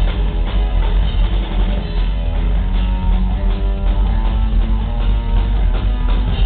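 Live psychobilly band playing loud and without a break: hollow-body electric guitar, upright double bass and drum kit, heard through a handheld camera's microphone in the crowd.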